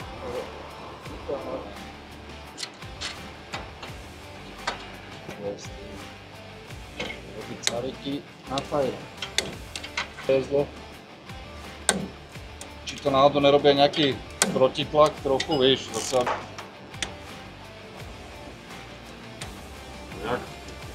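Background music with a singing voice, loudest about two-thirds of the way through, over scattered sharp clicks of wrenches working metal fittings.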